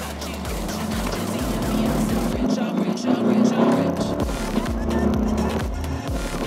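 Electronic background music over the sound of a Mercedes E220 CDI's four-cylinder diesel engine heard from inside the cabin. The low engine hum grows louder in the middle of the stretch.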